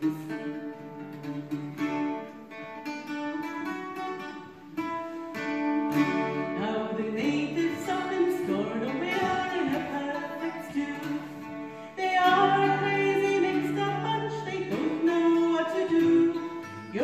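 Small acoustic folk group playing a song, with guitar and other plucked strings and singing. It gets louder about three-quarters of the way through.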